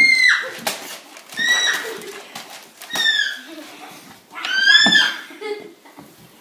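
Girls shrieking in high-pitched cries, about four of them a second or two apart, the loudest near the end, as they wrestle on the floor, with a few knocks in between.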